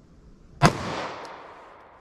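A single pistol shot of .45 ACP +P ammunition, a sharp crack about two-thirds of a second in, followed by an echo that dies away over about a second among the trees.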